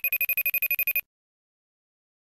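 iPhone FaceTime outgoing-call ringing tone: one ring of rapid trilling pulses, about a dozen in a second, that stops about a second in.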